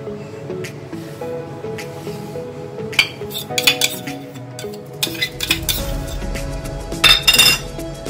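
Background music, over a metal spoon clinking and scraping against the cream container and the saucepan as fresh cream is scraped onto chopped chocolate. The loudest scrape comes near the end.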